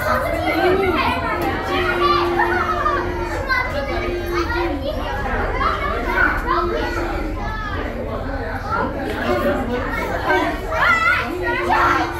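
Crowd chatter of many overlapping voices, with children talking and calling out over one another, echoing in a large enclosed space.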